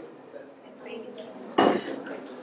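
A single sharp clatter of something hard being knocked or set down about one and a half seconds in, over a low murmur of voices in the room.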